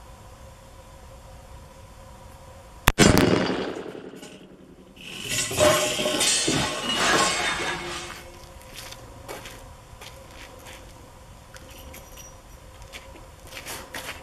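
A single shot from a .44 Magnum Smith & Wesson revolver about three seconds in, loud and sharp, with a short echo after it. A few seconds later comes clinking and rattling as the revolver is handled.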